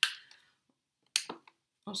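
Sharp clicks and a light clink of an eye pencil and a makeup case being handled. There is one knock at the start that dies away quickly, then a quick cluster of clicks a little past the middle.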